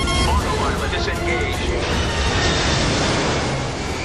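Film soundtrack mix: dramatic score over loud, dense Boeing 747 jet and airflow noise, with raised voices.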